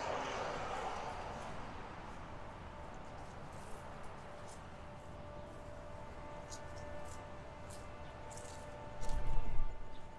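Faint outdoor ambience with a faint steady hum. About nine seconds in, a loud low rumble lasting about a second, like wind buffeting the microphone.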